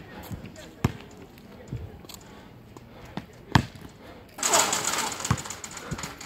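A basketball bouncing on an asphalt court, with single hard bounces a second or more apart. About four and a half seconds in comes a loud, rough burst of noise lasting over a second.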